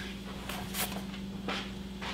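Quiet room tone with a steady low hum and a few faint, short knocks and taps spread through it.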